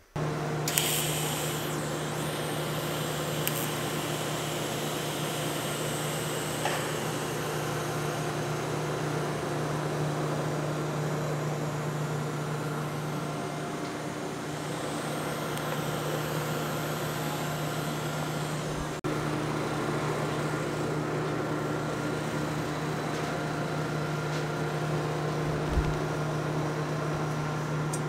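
Steady machine hum with a low drone and a few fainter steady tones above it, changing slightly about two-thirds of the way through.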